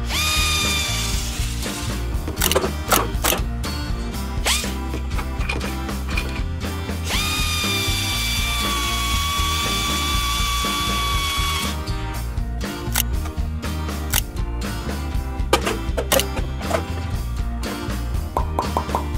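Toy electronic drill whining as its bit spins: a short run at the start and a longer run of about four seconds in the middle, each rising quickly in pitch and then holding steady. Scattered plastic clicks come between the runs, over steady background music.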